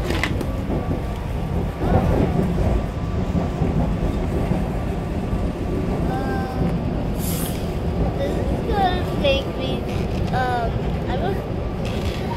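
Steady low rumble of a commuter train running at speed, heard from inside the passenger car.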